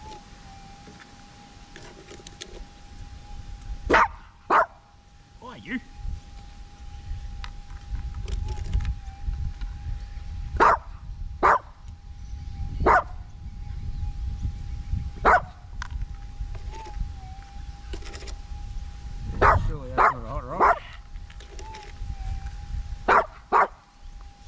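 A small terrier barking, about ten short sharp barks singly and in pairs, with a longer pitched yelp about twenty seconds in. Under the barks runs the steady threshold hum of a Minelab GPX 6000 metal detector, which wavers briefly a few times.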